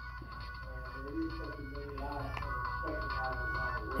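A mobile phone's musical ringtone playing a groovy tune, growing a little louder toward the end.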